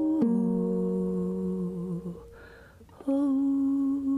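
A woman humming a slow wordless melody in long held notes over ukulele chords. The sound falls away about two seconds in, leaving only a faint breath, and a new held note starts about a second later.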